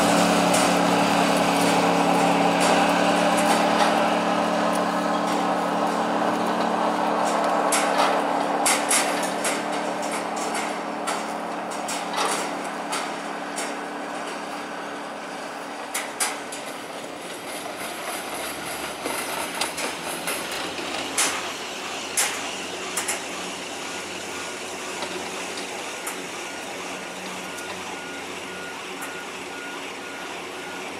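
Montaz Mautino basket lift running through its station: a steady machine hum fades out over the first several seconds, followed by scattered clicks and clanks from the moving baskets and sheaves. Near the end a high beep repeats at an even pace.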